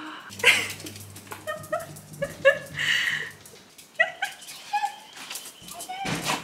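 Dachshund whining and yipping with excitement at someone arriving home, several short high-pitched calls, with its paws scratching and tapping at the door.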